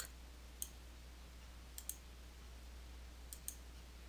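Faint computer mouse clicks, five in all: a single click about half a second in, a quick pair near two seconds, and another pair past three seconds.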